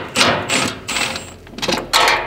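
Ratchet work on the bolts of a fuel filter housing: a run of sharp metallic clicks and knocks, with a thin high whine lasting under a second near the start.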